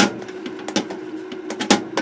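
A cloth pressed and rubbed by hand over the solder side of a circuit board, blotting solvent off the traces: a few dull knocks and scuffs, one at the start and two close together near the end.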